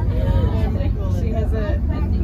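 Steady low rumble inside an aerial cable car cabin as it rides down its cable, with people talking over it.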